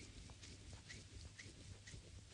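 Faint sound of oiled hands rubbing and pressing on the skin of a foot during a reflexology massage, with small skin-on-skin squeaks about every half second.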